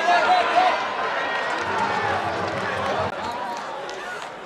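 Live football match sound in an open stadium: several men's voices shouting and calling over one another, loudest in the first second, above steady open-air crowd ambience.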